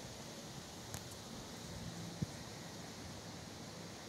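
Faint, steady outdoor background hiss, with a faint click about a second in and a small sharp knock a little after two seconds.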